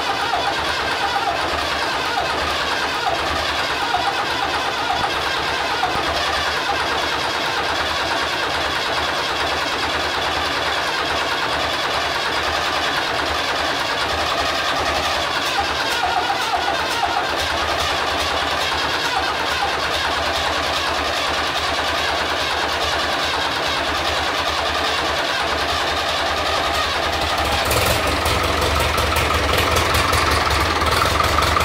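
David Brown 996 tractor's diesel engine running on its first start after new piston rings were fitted, puffing through the upright exhaust stack. It runs steadily, and in the last couple of seconds it gets a little louder and more even.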